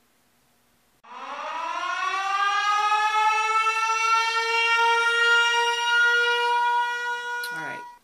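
Air-raid siren sound effect: it starts about a second in, winds up in pitch, then holds one steady loud tone for several seconds before cutting off near the end. It marks a 'warning, this product sucks' verdict.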